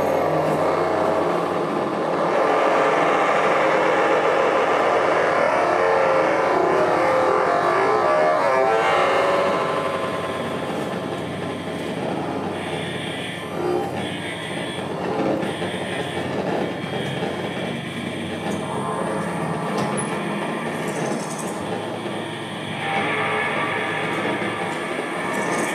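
Electronic free improvisation on modular synthesizers and effects: a dense, noisy sustained texture across the low and middle range. It thins out after about nine seconds, with short high tones sounding in the middle stretch, and thickens again near the end.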